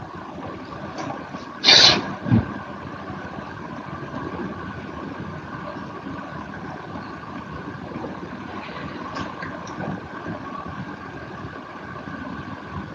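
Steady hiss and hum of an open voice-chat microphone line, with one short noisy burst just under two seconds in.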